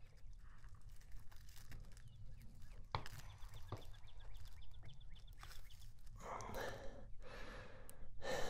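Faint scratching and rustling of fingers picking at a woven plastic sandbag to free a bullet lodged in it, with a few small clicks and a longer rustle about six seconds in.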